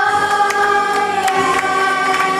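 A children's chorus holding one long sung note over backing music.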